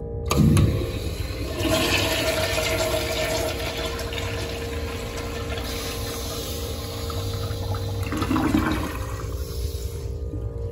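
Commercial toilet's chrome flushometer valve flushed by its handle: a sharp clunk as the valve opens, then a strong rush of water through the bowl that holds for several seconds and eases off near the end.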